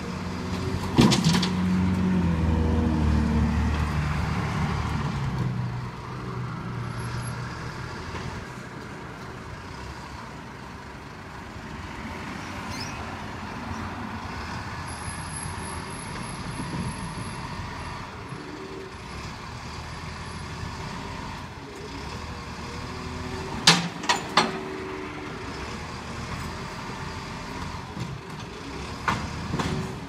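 Hino side-loader garbage truck's diesel engine running while its automated arm tips a wheelie bin into the hopper. There is a loud clank about a second in, and the engine runs louder for the first few seconds before settling to a steadier idle. Three sharp knocks come in quick succession about three-quarters of the way through, and another comes near the end.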